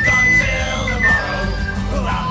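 Tin whistle playing a high folk melody, holding one bright note for about a second and then stepping down, over a band backing track with drums.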